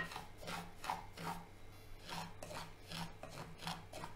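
Wooden spatula stirring and scraping dry semolina (rava) around a nonstick pan as it is roasted, a rhythmic rasping scrape about three strokes a second.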